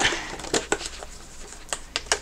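A spiral-bound Amplify paper planner being handled as a bookmark is pulled out of it: a few soft clicks and rustles of paper and plastic.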